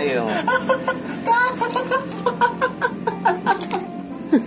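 A man's voice exclaiming and chuckling, with a run of quick laugh-like pulses in the second half.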